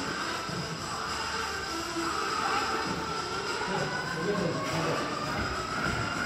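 Echoing background chatter of children's and adults' voices over a steady noisy hum, with a faint whine rising slowly through the second half.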